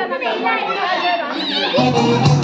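Several women talking and calling out over one another, with a music track starting up near the end: the music restarting for the next round of musical chairs.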